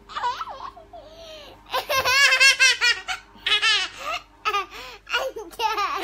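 High-pitched laughter in repeated short bursts. It is loudest and most sustained about two to three seconds in, with further bursts near the end.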